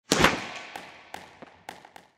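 Intro logo sound effect: one loud sharp hit with a long fading tail, followed by a series of fainter sharp clicks about every quarter to half second that die away.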